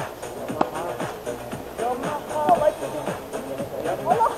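Background music: a song playing.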